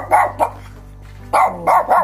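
A Shih Tzu barking sharply in two quick runs of about three barks, the second run starting just past halfway. These are warning barks at a stranger the dog is angry at.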